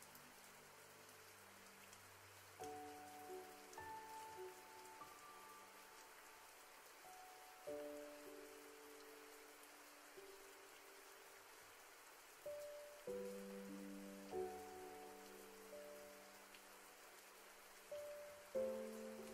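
Faint background music: soft, held notes and chords that change every few seconds, over a steady hiss.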